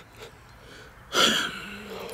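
A man's short audible breath, a sigh through the mouth, about a second in, followed by a low hummed "mm" as he hesitates before speaking.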